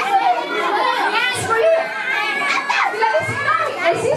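Many young children talking and calling out at once, overlapping voices in a large hall.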